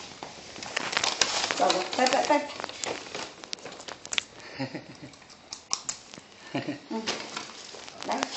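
Crinkling and rustling of a wrapper or bag being handled, a run of short crackles and clicks, with voices heard in between.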